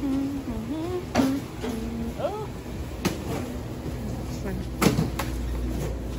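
A woman's voice humming a few short, wavering notes, mixed with several sharp clicks and knocks; the loudest knock comes about five seconds in.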